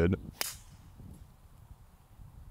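A golf driver striking the ball off the tee: one sharp crack about half a second in. The drive is topped.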